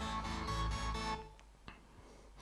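Music playing through a JBL Xtreme 2 Bluetooth speaker, heavy in the bass, that cuts off abruptly about a second in, leaving near silence broken by two faint clicks.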